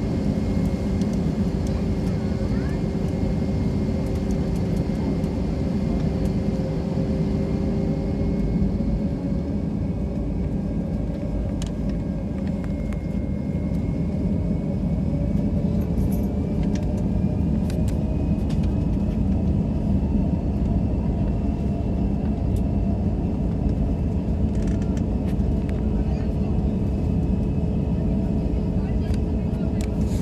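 Cabin noise of an Airbus A320 taxiing, heard from inside at a window seat: the jet engines give a steady low rumble at taxi power. Over it sit thin whining tones that slowly creep upward in pitch during the second half.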